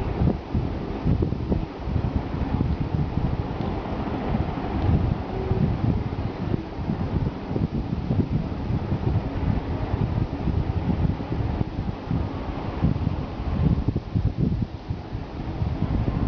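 Low, rapidly fluttering rumble of noise on the microphone, like wind noise, continuing without a break.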